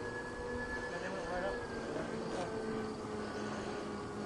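Steady whine of the electric motors and propellers of a 103-inch radio-controlled P-38 Lightning model in flight, its highest tone sliding slightly lower about a second and a half in.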